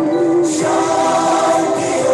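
Slow, meditative choral music: several voices holding long notes together, moving to a new chord about half a second in.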